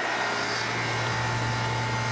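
Carrier central air conditioner's outdoor condensing unit running steadily, a low compressor hum under the rush of the condenser fan. The system has just been recharged to its target superheat and is running good.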